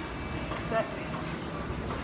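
Steady background noise of a busy gym hall, with a woman's voice saying "set" once, a little under a second in.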